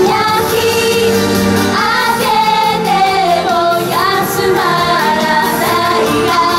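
A group of girls singing a song together over backing music, their voices amplified through headset microphones.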